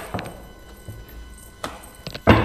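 Tarot cards being handled off camera: a couple of soft taps and clicks over a quiet room.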